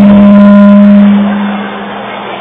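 One loud, steady held note through a party PA system, a single pitch with overtones that fades out about a second and a half in.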